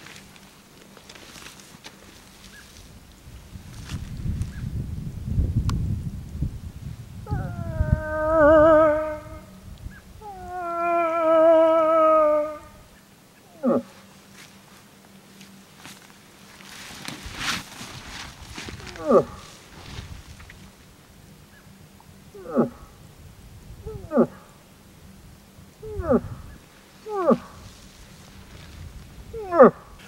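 Two long, wavering cow-moose estrus calls, then a string of short, falling bull-moose grunts every one to three seconds. A low rumble sits under the first call.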